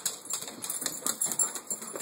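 Dogs' collar tags jingling and claws clicking on wooden deck boards as they hurry out through the door: a rapid, irregular run of light clicks and jingles.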